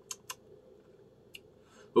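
A few faint lip smacks from someone tasting a mouthful of beer: two small clicks near the start and one more a little past the middle.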